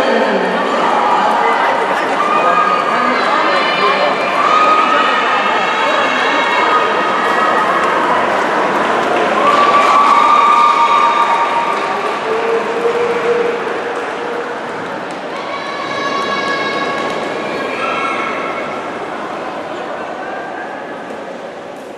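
Spectators cheering and shouting encouragement at swimmers, many voices at once with long drawn-out yells, easing off somewhat over the last few seconds.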